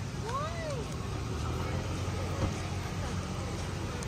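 Night-time street ambience: a steady low rumble of traffic, with faint voices of people nearby, one exclaiming briefly near the start.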